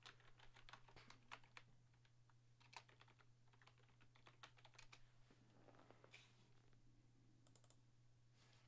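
Near silence with faint, irregular clicking, like typing on a computer keyboard, over a steady low hum.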